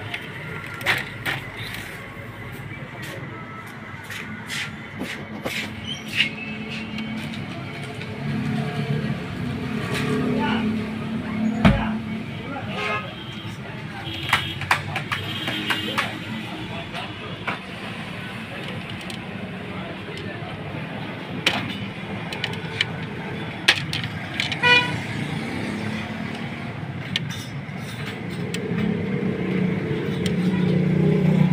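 HP LaserJet Pro 400 laser printer being handled while taken apart: scattered clicks and knocks of its plastic covers and metal frame parts, with one sharp knock about twelve seconds in and a short rapid clatter near the end.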